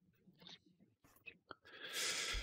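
Near silence with a few faint mouth clicks, then a breathy exhale into a close microphone near the end.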